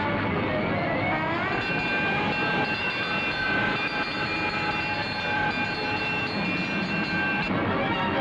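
Fire truck siren winding up about a second in, then holding a steady high tone over engine and road noise, and cutting off abruptly near the end.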